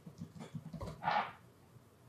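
Laptop keyboard keys clicking in a quick run as a short word is typed, with a brief breathy rush of noise about a second in.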